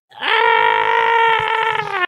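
A person's voice giving one long, high-pitched cry that rises at the start, holds steady for nearly two seconds and cuts off sharply.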